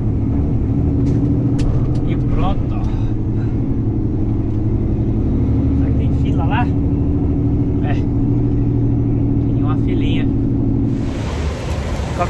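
Diesel engine of a car-carrier semi truck running steadily as the truck drives, its pitch shifting slightly now and then. The engine sound cuts off about a second before the end.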